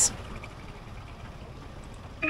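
Steady low rumble of street traffic in the background, with no distinct event.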